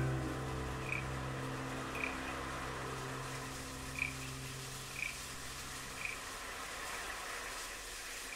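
A held chord of the chamber ensemble fades out over the first six seconds. Under it are a faint hiss and short high chirps about once a second, an ambient effects layer ending the track.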